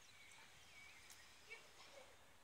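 Near silence: quiet outdoor ambience with a few faint, short high chirps and a small tap about one and a half seconds in.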